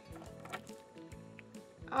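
Soft background music with short repeating notes, with a few faint clicks of small plastic toy pieces being handled.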